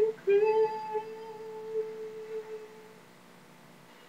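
A woman's voice holding one long note at a steady pitch, with a slight scoop up at its start, fading out about three seconds in. Faint hiss follows.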